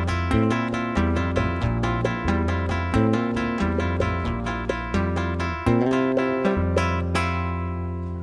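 Brazilian-style acoustic music: an acoustic guitar picked in a quick, even rhythm of about five strokes a second over a bass line. The strokes stop about seven seconds in and a last chord rings on, fading.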